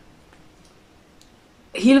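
A pause in a woman's talk: low room tone with a couple of faint clicks, then her voice comes back near the end.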